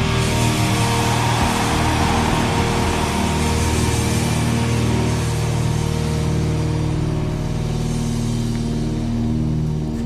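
Live heavy rock band music: a held chord rings on and slowly fades, the close of the song.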